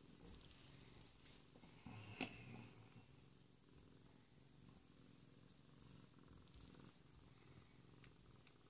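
A domestic cat purring faintly and steadily, with a brief click about two seconds in.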